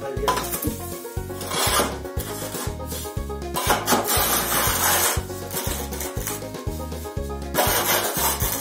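A long metal rule scraping and rubbing across loose sand as it is drawn along steel angle guide rails to screed the sand level. A few louder scrapes come about two, four and eight seconds in.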